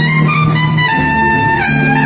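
Big band playing jazz live, a trumpet out front holding long notes over a steady bass line, the melody stepping down near the end.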